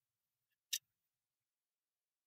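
Near silence with a single short click about three-quarters of a second in, as the lamp and its plugged-in cord are handled.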